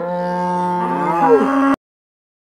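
A long, low, moo-like call that dips in pitch at first, then holds steady and cuts off abruptly near the end.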